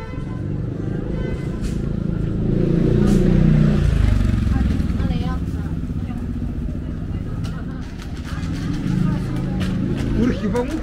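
A motorbike passing by on the street, its engine swelling to a peak a few seconds in and then fading away, with people talking around it.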